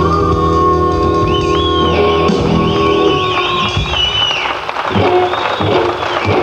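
Live blues band ending a song on a held final chord, with electric guitar and bass sustaining and wavering, bending high notes over the top. About four seconds in, the held chord breaks up into a ragged, noisy close.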